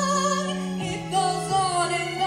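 A woman singing held, wavering notes with vibrato into a microphone over a steady instrumental accompaniment. The accompaniment's chords change twice.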